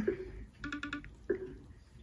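iPhone VoiceOver screen-reader feedback from the phone's speaker as the screen is tapped: a few brief, soft electronic blips, with a quick, rapidly pulsing stretch about half a second in.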